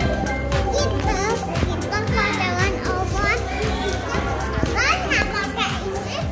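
Young children's high voices chattering and calling out, over background music with a steady beat.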